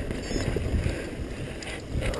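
Mountain bike riding fast on a dirt forest trail: a steady, uneven rumble of knobby tyres and frame jolting over the ground, with wind buffeting the microphone.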